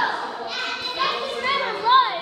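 Children playing, with several short high-pitched vocal calls that rise and fall in pitch.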